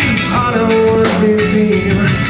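Rock band playing live through a PA in a concert hall: electric guitars and drums, with long held notes through the middle.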